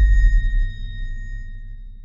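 Tail of a cinematic logo-intro sound effect: a deep rumble and a high ringing tone slowly dying away.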